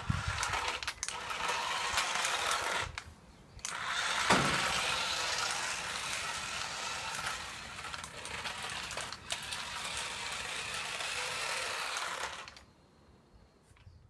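Toy RC Lamborghini Murciélago SV driving on rough concrete: its small electric motor and gears whir along with the hiss of its plastic wheels. The sound pauses briefly about three seconds in and cuts off about a second and a half before the end.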